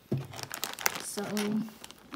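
Clear plastic packaging of a toy party-favor pack crinkling as it is handled, in quick irregular crackles.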